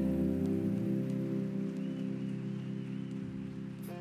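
A live band's sustained chord held and slowly fading out, with a soft even hiss over it and no singing.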